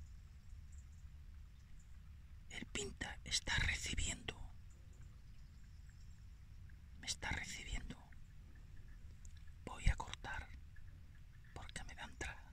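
A person whispering quietly in four short bursts, the first about two and a half seconds in and the last near the end.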